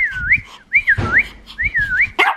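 A person whistling to call a dog: three short wavering whistles, each dipping and rising again in pitch, about a second apart, with a few low thumps underneath.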